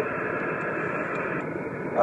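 Steady static hiss from a Yaesu FT-857D transceiver receiving on 27.570 MHz upper sideband between transmissions, cut off sharply above the voice band by the radio's filter, with car road noise beneath it.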